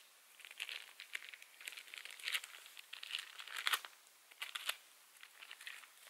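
Thin plastic vacuum-pack bag crinkling and tearing as it is cut open and a raw steak is worked out of it, in irregular bursts of rustling.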